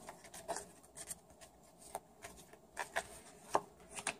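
Tarot cards being handled and laid face-down on a cloth-covered table: a faint, uneven string of soft taps and light clicks of card against card and cloth, the sharpest about three and a half seconds in.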